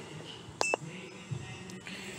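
A single short electronic beep from a handheld Autel MaxiCheck Pro scan tool as a key is pressed, about two-thirds of a second in, over a faint steady background hum.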